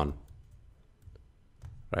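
A few faint, scattered clicks from a computer keyboard and mouse.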